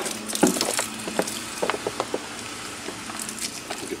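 Hand cultivator scraping damp worm castings out of a plastic bin, the compost crumbling and falling into the tub below. A run of short, sharp clicks and crackles comes mostly in the first two seconds, then it goes quieter.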